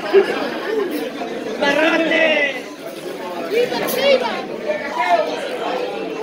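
People talking and chattering, several voices overlapping, with no music playing.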